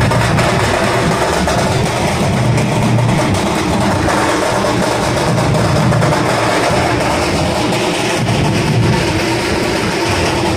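Loud music from a street procession, strongest in the bass, playing on without a break.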